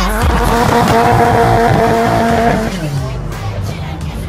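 Ford Sierra Cosworth's 2.0 turbocharged four-cylinder engine held at steady high revs while the rear tyres spin and squeal in a burnout. It drops away a little under three seconds in.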